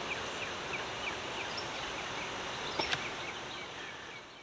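Backyard ambience: a steady hiss with a small repeated chirping, about three chirps a second, and one sharp click about three seconds in.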